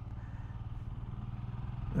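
Royal Enfield Himalayan's single-cylinder engine running at a steady cruise, heard from the moving bike as a low, even drone with a rapid regular pulse.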